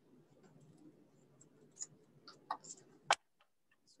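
Small craft scissors snipping at a thick bundle of yarn to cut a pom-pom: scattered light clicks of the blades, with one sharper click about three seconds in. The small scissors are struggling to get through the bundle.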